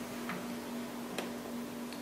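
Two faint plastic clicks, about a quarter second in and again a little past the middle, as the Ricoh Aficio 2238c copier's front cover swings open, over a steady low hum.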